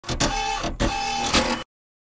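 Short channel-intro sound effect: a dense mechanical-sounding clatter in three pushes, with a steady tone under the first two, that cuts off suddenly after about a second and a half.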